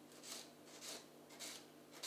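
Kitchen knife slicing through spring onions on a cutting board: three faint cuts about half a second apart.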